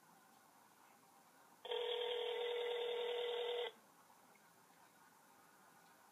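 Ringback tone of an outgoing mobile phone call, heard through the phone's speaker: one steady ring about two seconds long, starting about a second and a half in, while the call is still unanswered.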